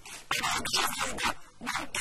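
Speech only: a person talking in Arabic, starting after a brief pause.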